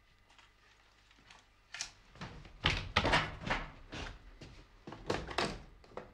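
A run of about seven irregular knocks and clicks over some four seconds: hand-pressed buttons and switches on a prop spaceship control console.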